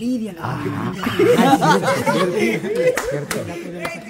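A group of men talking over each other and laughing, with two short sharp smacks about three seconds in.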